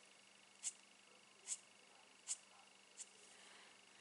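Stampin' Blends alcohol marker tip flicked across cardstock: four short, faint strokes a little under a second apart.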